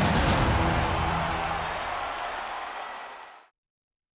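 Closing theme music of a TV sports programme ending on a held final chord that fades away, then cuts to dead silence about three and a half seconds in.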